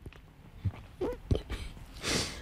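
A woman crying: a few short, choked catches of breath and small whimpering sobs, spaced less than half a second apart, with the sharpest one about a second and a half in.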